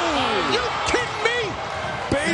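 Basketball game sound in an arena: crowd voices and shouting, with a basketball bouncing on the court.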